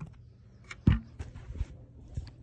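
BRIO toy pieces being handled: a sharp knock just under a second in, the loudest sound, then several lighter knocks and taps.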